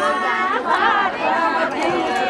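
Several women's voices at once, overlapping one another.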